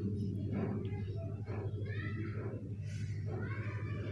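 Sev frying in hot oil in a kadhai over a steady low hum, while a slotted ladle stirs the strands. Two short, wavering high pitched calls sound over it, about two and about three and a half seconds in.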